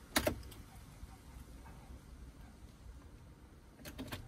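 A sharp click a fraction of a second in, then a faint low hum and a few softer clicks near the end, as the 2018 Silverado 3500's ignition is switched from run to off.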